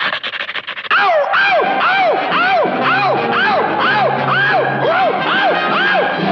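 Cartoon dog's voice giving a rapid run of yelping cries, about two a second, each rising then falling in pitch. The run starts suddenly about a second in, over the cartoon's orchestral score.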